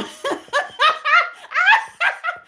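A woman laughing in a run of short bursts, the last one sweeping up higher in pitch near the end.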